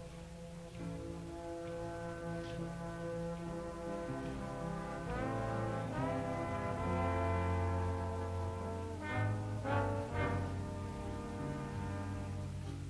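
High school jazz big band opening a slow ballad with long, held chords, brass to the fore, swelling gradually louder through the phrase.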